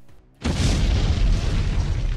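Explosion sound effect: a sudden boom about half a second in, followed by a deep, sustained rumble.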